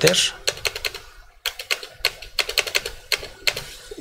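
Computer keyboard typing: irregular runs of quick key clicks as data is keyed into form fields, with a brief pause a little after one second in.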